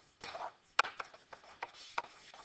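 Pen stylus scratching and tapping on a tablet screen while handwriting numbers: a short scrape followed by several sharp taps.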